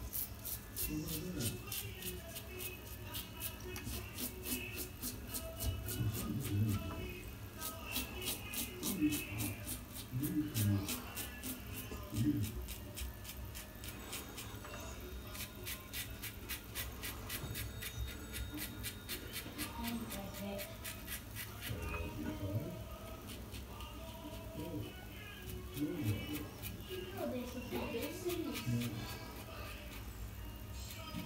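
Safety razor scraping through lathered stubble around the mouth in short strokes, a fine crackling rasp that comes and goes, busiest in the first half. Music plays faintly in the background.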